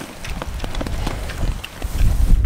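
Pigs eating whole shelled corn off the ground: a dense, irregular crackle of kernels crunching in their mouths, with a low wind rumble on the microphone.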